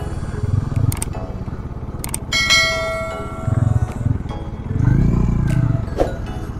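Motorcycle engine running at road speed with wind rumble on a helmet-mounted camera, swelling a few times. A couple of sharp clicks, then a bright bell-like ding that rings for about a second, about two seconds in.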